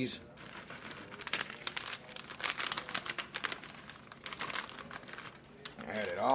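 Plastic bag of shredded mozzarella cheese crinkling irregularly as it is handled and emptied over a pot.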